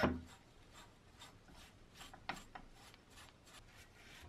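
A bristle paintbrush scrubbing and dabbing liquid over rusty metal oil-lamp parts: faint, irregular scratchy brush strokes, with one louder stroke at the very start.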